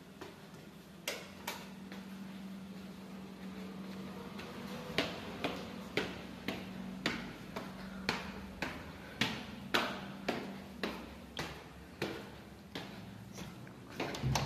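Footsteps on tiled stairs and floor, a run of sharp steps about two a second starting about a third of the way in, over a steady low hum.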